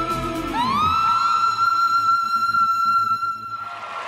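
A woman singing the final note of a song over backing music: she slides up into one long, very high note and holds it steady for about three seconds. It cuts off near the end as applause begins.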